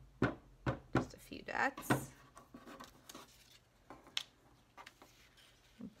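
Quick light taps and clicks, about three a second and fading after two seconds, as a plastic school-glue bottle is squeezed and dabbed onto a paper cut-out.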